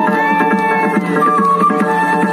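Traditional dance music: drums beating a quick, steady rhythm under a high, reedy pipe melody held on long notes, which steps up to a higher note about a second in.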